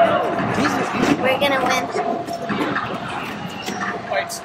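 Background voices of several people talking, not picked up as words, in a large hall.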